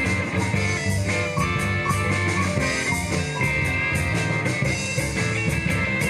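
Live blues band playing an instrumental section: electric guitars, bass, keyboard and drum kit. A lead guitar line bends notes over a steady beat.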